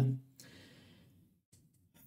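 A man's faint, breathy sigh, an exhale lasting about a second after his last word trails off, followed by a couple of faint clicks.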